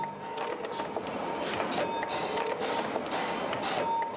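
Automatic chain-making machine bending steel wire into links: a dense, rapid metallic clatter with a steady high-pitched whine running through it.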